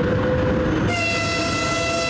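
An electric locomotive's horn starts about a second in and holds a steady multi-tone chord over the noise of the approaching train. It is the train's warning blast at a level crossing.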